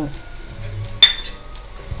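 A steel spoon clinks once against the stainless-steel kadai about a second in, a sharp metallic tap with a short ring, as ground spice powder is tipped onto the vegetables.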